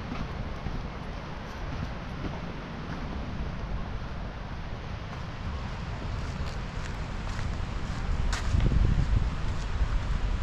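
Wind rumbling and buffeting on the microphone of a handheld camera carried on foot, getting stronger near the end, with a few light clicks or taps in the second half.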